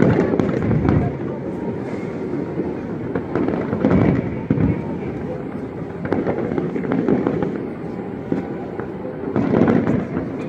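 Fireworks display: a continuous run of booms and crackling, with louder rumbling volleys about a second in, around four seconds in, and near the end.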